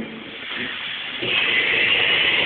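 A steady hiss that grows louder and higher-pitched about a second in.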